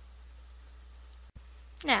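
Pause in a narrated recording: a low, steady background hum, broken by a brief dropout with a click a little past halfway, before speech resumes near the end.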